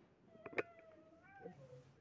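A faint, high, drawn-out vocal sound from a person, wavering slightly in pitch for about a second, with a sharp click about half a second in.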